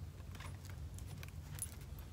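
Hardcover picture book being opened and its first pages turned: a few faint, short papery rustles and clicks over a steady low room hum.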